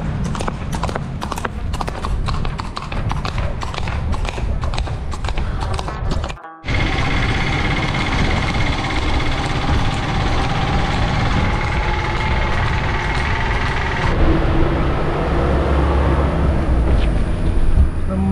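A horse's hooves clip-clopping on a paved road, a quick run of sharp knocks over a low rumble of wind on the microphone. The sound drops out briefly about six seconds in, then a steady rumble of wind and road noise carries on with faint steady tones.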